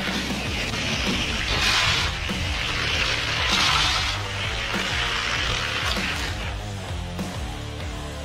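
Background rock music throughout, over the rolling noise of Hot Wheels die-cast cars running along orange plastic track. The rolling noise is loudest about two and four seconds in and dies away by about six and a half seconds.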